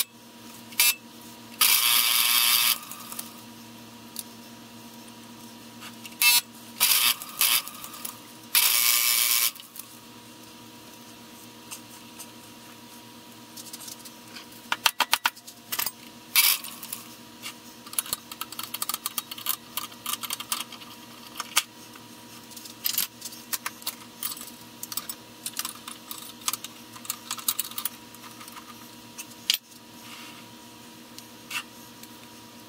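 Small metal lathe running with a steady motor hum while a drill bit in the tailstock drill chuck bores into the end of an axle, drilling the hole for tapping. Two loud bursts of cutting noise come about 2 and 9 seconds in, followed by many sharp metallic clicks and ticks in the second half.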